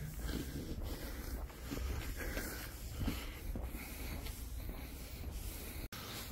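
A person walking on a paved lane, with faint irregular footsteps and breathing over a low wind rumble on the microphone. The sound drops out briefly at an edit near the end.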